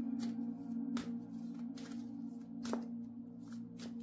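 A deck of tarot cards being shuffled by hand: a string of soft, irregular card flicks and slaps, over steady droning ambient music.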